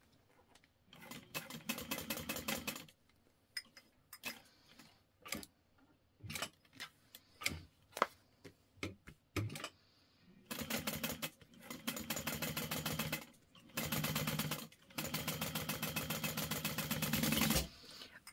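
Juki industrial sewing machine stitching through layers of vinyl in bursts. A short fast run comes about a second in, then scattered single clicks for several seconds, then longer fast runs of stitches through the second half, briefly pausing twice.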